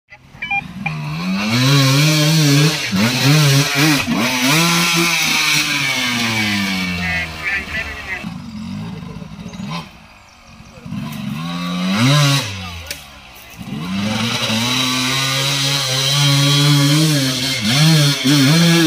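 Dirt bike engine revving up and down under throttle while climbing a rutted trail, its pitch repeatedly rising and falling. The engine drops low about ten seconds in, and again briefly around thirteen seconds, before picking back up.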